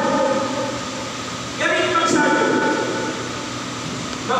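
A man's voice chanting in long, drawn-out melodic notes rather than ordinary speech. A new held phrase begins about a second and a half in, and the voice softens near the end.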